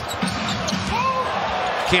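Basketball game sound from the court: a ball bouncing on the hardwood floor over steady arena crowd noise, with a short squeak about a second in.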